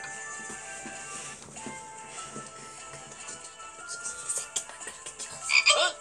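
Cartoon frog croaking sound effects over soft, sustained background music, with the croaks getting louder near the end.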